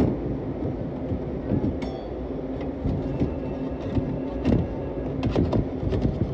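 Steady low rumble and hum of a commercial kitchen, with scattered clicks and knocks of metal pizza scissors and a spatula against a pizza pan.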